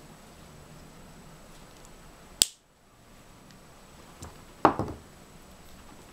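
Wire cutters snipping thin copper wire with a single sharp click about halfway through, followed by a few softer clicks and knocks of pliers being handled near the end.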